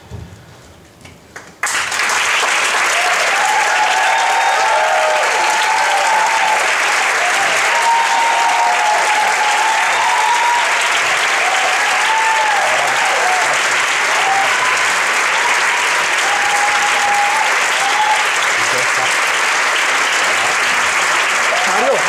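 Theatre audience applauding, starting suddenly about two seconds in and then running steady and loud, with voices calling out over the clapping.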